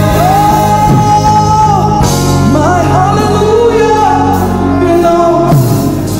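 Gospel worship song: a lead voice holds long, gliding sung notes over sustained keyboard chords and a steady bass.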